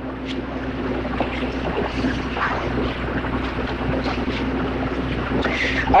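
Steady background noise of a lecture hall on an old cassette recording: hiss with a low, steady electrical hum and a few faint soft sounds.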